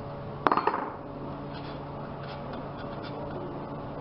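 A sharp metallic clink with a brief ringing, then two quick lighter knocks, about half a second in, as metal parts of a flame safety lamp or the tool used to open it are knocked or set down. A steady low hum runs underneath.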